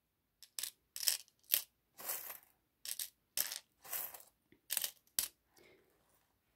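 Small metal charms clinking as they are dropped from a pouch onto a tray, about a dozen light, bright clinks at irregular intervals.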